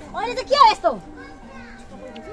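Voices of a crowd with children: one high voice slides up and then falls steeply about half a second in, followed by fainter voices.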